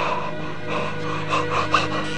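A man gasping several times in pain, dying of a self-inflicted wound, over a low, sustained musical drone.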